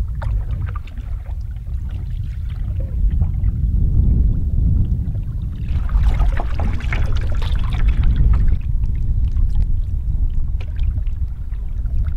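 Canoe paddle strokes and water splashing and lapping at the hull, under a heavy, steady low rumble of wind on the microphone.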